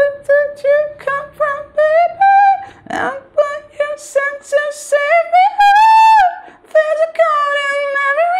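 A man singing a chorus melody unaccompanied in light head voice, in short separate notes. The melody rises to a longer held higher note about six seconds in.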